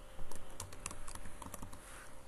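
Computer keyboard being typed on: a quick run of separate keystroke clicks as a word is entered.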